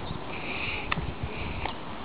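Walking with a handheld camera: soft footsteps and handling thumps, with a recurring hiss and a couple of sharp clicks.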